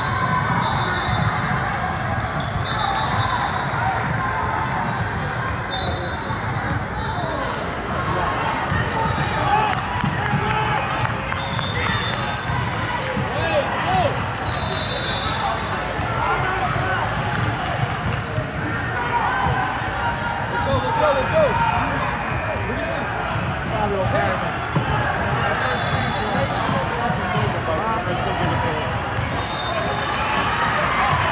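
Basketball bouncing on a hardwood gym floor during a game, over a steady hubbub of many voices echoing in a large sports hall, with scattered short high squeaks.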